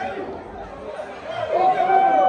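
Several people talking and chattering at once in an echoing corridor, with a voice rising into one long, loud held call near the end.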